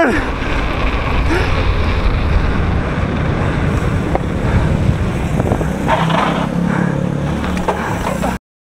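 Wind buffeting the camera microphone, mixed with the tyre noise of a mountain bike rolling fast on pavement: a loud, steady rush heaviest in the low end.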